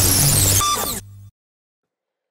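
Loud synthetic whoosh with squeaky gliding tones running through it, an intro logo sting sound effect. It cuts off about a second in, leaving a brief low hum.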